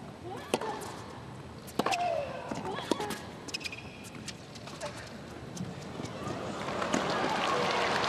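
Tennis ball struck back and forth with rackets in a rally, a sharp pop every second or so, with a player's short grunt on the stroke about two seconds in. Crowd noise swells near the end as the point finishes at the net.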